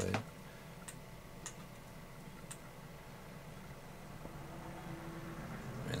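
Three faint, short computer-mouse clicks over a low, steady room hum.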